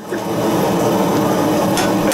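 Propane gas forge burner running steadily, with a single hammer blow on hot brass against the anvil near the end.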